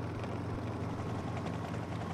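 Steady low engine drone with a light hiss of noise, the running sound of race vehicles, holding even with no change.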